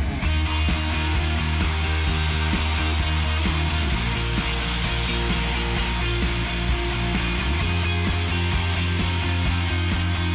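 Rock music with a reciprocating saw cutting through a wooden framing plate underneath it; the saw noise comes in about half a second in and runs on steadily.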